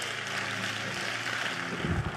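A congregation applauding in a steady patter, with soft held musical chords underneath.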